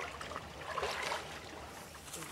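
Shallow ditch water sloshing and splashing around a person's waders as he moves and reaches down into it, heaviest about a second in.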